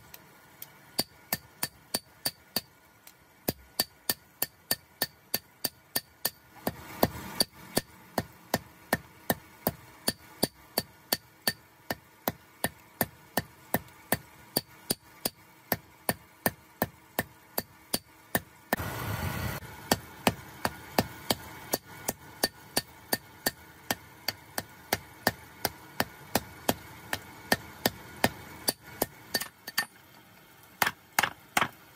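Hand hammer striking a red-hot steel knife blade on a small steel anvil block: a steady run of sharp metal-on-metal blows, about two to three a second. Two brief bursts of rushing noise come in, about seven seconds in and again near the middle.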